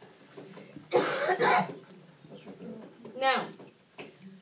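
A person coughing about a second in, a harsh burst with two peaks close together. A brief voiced sound with a falling pitch follows near the end.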